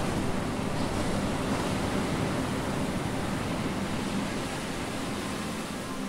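Sea waves washing onto the shore: a steady rushing of surf, a little louder at first and easing slightly towards the end.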